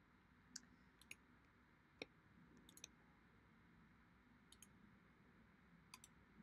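Faint computer mouse clicks: about six scattered single clicks over near silence.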